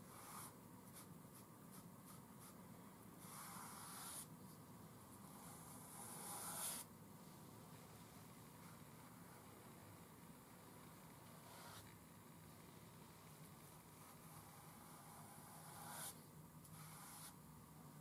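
Near silence broken by a few faint swishes of a paintbrush spreading asphalt paint over a foam-board model roadway, the clearest two a few seconds in and another near the end.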